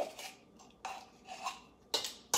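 Metal measuring spoon and whisk knocking and scraping against a stainless steel mixing bowl of dry ingredients while baking powder is spooned in: a few short clinks and scrapes, the sharpest at the start and near the end.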